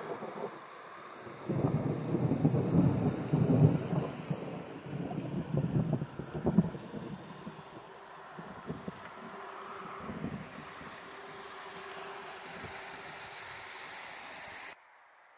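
Thunder rumbling for several seconds, starting about a second and a half in and fading out after a sharper peak near the middle, followed by a quieter steady background hum.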